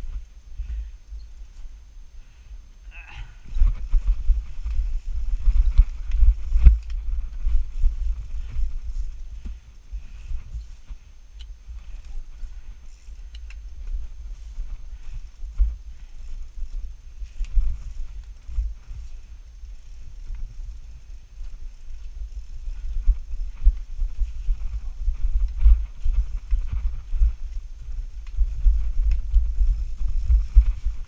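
Strida folding bike rolling down a bumpy dirt singletrack: a steady low rumble with uneven knocks and rattles as it jolts over ruts. The jolting gets busier about three seconds in and again in the last few seconds.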